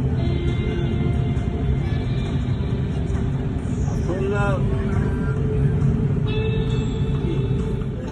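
Steady low road rumble inside a car cabin, with music playing over it and a brief voice about halfway through.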